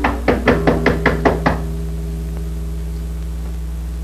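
Rapid knocking on a door: about eight quick knocks over a second and a half, then stopping, with a steady low hum underneath.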